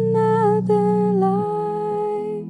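Young woman singing long held notes with small pitch slides, over steady low accompaniment chords that change about one and a half seconds in.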